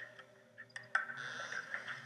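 Quiet film soundtrack: a faint steady low drone with a few soft clicks in the first second and a light hiss after that.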